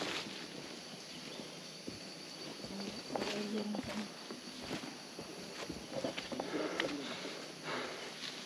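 Footsteps on dry leaf litter along a forest path, with a steady high-pitched insect drone behind. Low voices come in briefly twice, about three and six and a half seconds in.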